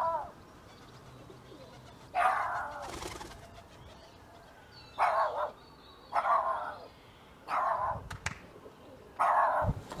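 Shih Tzu barking: five short barks spread a second or two apart.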